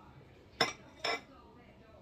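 Large chef's knife blade striking the plate under a bundt cake as it cuts down through it: two short clinks about half a second apart.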